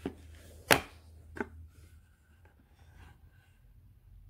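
Sharp knocks and taps from a perfume presentation box being opened out and handled: three in the first second and a half, the middle one the loudest, then a fainter tap.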